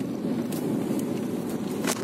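Steady road and engine rumble inside a moving Skoda car's cabin, with a couple of light clicks.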